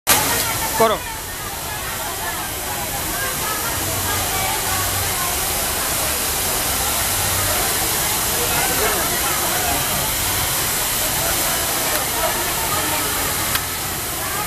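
Steady hiss of garment factory floor noise with indistinct voices in the background and a brief louder sound right at the start.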